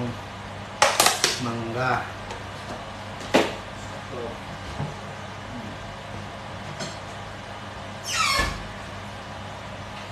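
A plastic ice-cream tub handled on a table, with a quick cluster of sharp clicks about a second in and another click a little later, plus brief vocal sounds. Near the end comes a squeak that falls in pitch. A steady low hum sits under it all.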